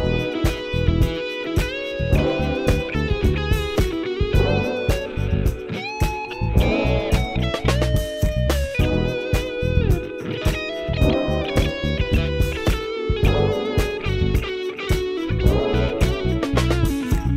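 Heritage H-535 semi-hollow electric guitar with PAF-style humbuckers, played through an amp: a melodic lead line of single notes, with several string bends.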